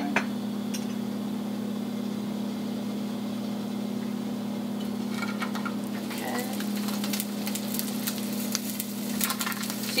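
Sausage links sizzling as they are laid one by one into hot olive oil in a stainless steel pan. The sizzle starts about halfway through, over a steady low hum.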